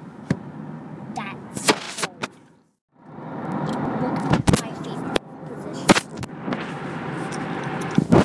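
Steady car-cabin road noise from a moving car, broken by several sharp knocks from the handheld recording device being handled. The sound drops out completely for about half a second around three seconds in.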